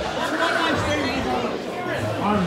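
Crowd chatter: several voices talking over one another in a large room.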